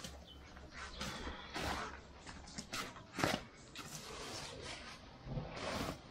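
Irregular rustles and scuffs of cut grass fodder being handled and pushed into a woven sack, mixed with footsteps in sandals on a dirt yard; the loudest rustle comes a little past the middle.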